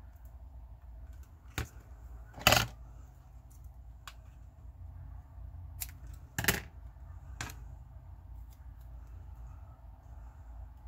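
Washi tape and its clear plastic dispenser being handled on a craft mat: a few scattered clicks and knocks, the two loudest about two and a half and six and a half seconds in, over a low steady hum.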